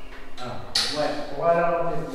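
People talking; the words were not picked up as English speech.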